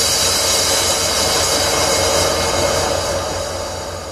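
Hardstyle track's transition section: a dense white-noise sweep fills the mix and fades out gradually over the last second or so.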